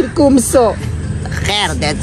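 A man talking in short phrases, over a steady low background hum.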